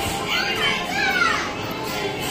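Children's voices at play: high calls and squeals rising and falling in pitch through the first second and a half, over overlapping background chatter.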